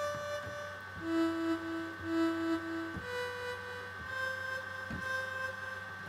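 Synthesized sawtooth tones from a Max/MSP phasor~ oscillator, played note by note from a MIDI keyboard with an envelope from a function object shaping each note's volume. A short note comes first, then two shorter lower notes, then one long higher held note, over a steady high tone.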